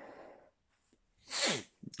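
A man sneezes once, a short burst with a falling voice about a second and a half in, after a soft breath near the start.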